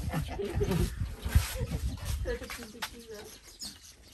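Farmed frogs croaking in a crowded tank, a string of short calls over a low rumble of wind on the microphone.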